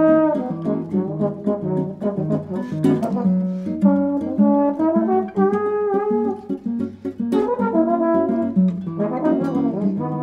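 Trombone playing a melodic solo, some notes bent or slid in pitch, over guitar chords.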